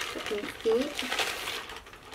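A thin clear plastic bag crinkling as a hardback book is pulled out of it, with a brief wordless vocal sound from the woman about half a second in.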